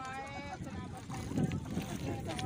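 Wind rumbling on the microphone and water lapping during a boat ride across a lake.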